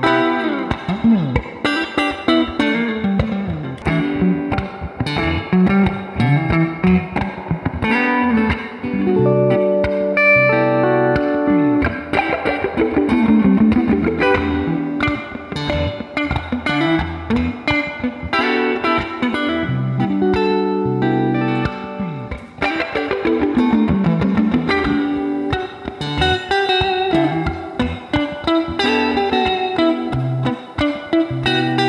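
Fender Jazzmaster electric guitars, several models in turn, played through a Fender combo amp in a clean tone: picked melody lines and chords, with notes that slide down and back up in pitch a few times.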